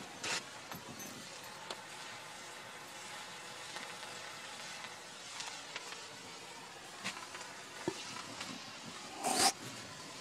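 Bengal cylinder flare burning with a steady hiss, a few faint crackles, and a short, louder rushing burst near the end.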